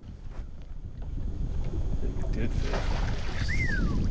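Low rumbling wind noise on the microphone, growing stronger after the first second, with one short whistle falling in pitch near the end.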